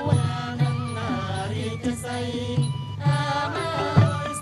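Traditional Cambodian music with a chanted vocal line, its held notes wavering in pitch over low, repeated accompaniment.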